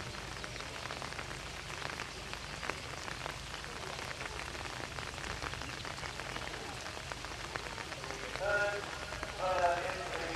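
Steady light rain pattering, many small drop ticks over a soft hiss. A person's voice calls out twice, briefly, near the end.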